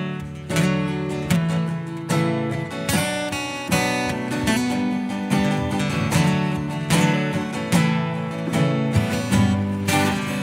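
Acoustic guitars strumming the instrumental intro of a country song before the vocals come in. The chords are played in a steady strum pattern with accents a little under a second apart.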